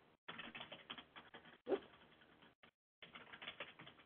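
Computer keyboard typing: quick runs of soft key clicks, broken by two short pauses.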